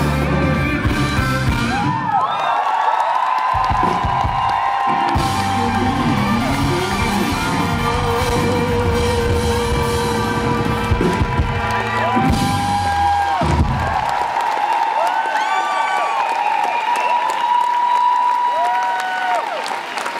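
Live rock band playing out the instrumental ending of a song. About two-thirds of the way through, the bass and drums drop out, leaving sustained high tones with audience whoops rising and falling over them.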